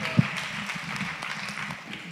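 Congregation applauding steadily, with one brief thump just after the start.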